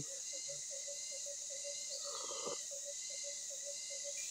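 Rainforest insect chorus: a steady high-pitched buzz, with a lower note pulsing about five times a second that stops shortly before the end, and a brief call about two seconds in.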